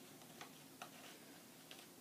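Near silence: room tone with three faint clicks, about a third of a second, a little under a second, and near the end.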